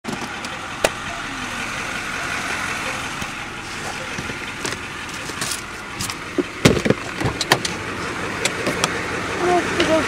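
A steady hiss of background noise, broken by scattered clicks and knocks of the camera being handled, most of them bunched together in the second half.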